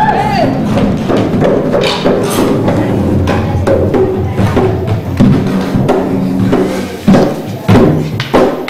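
Garifuna hand drums played together in a dance rhythm, with voices over the drumming and two sharp, loud strokes near the end.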